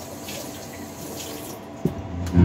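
A steady rushing noise, and near the end one sharp pluck on an acoustic guitar.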